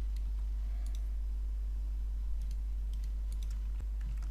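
A few scattered computer mouse and keyboard clicks as someone works at a computer, over a steady low hum.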